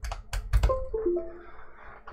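A few sharp clicks as an SD card is plugged into a computer, then the computer's device-connected chime: a short run of clear tones, mostly falling in pitch.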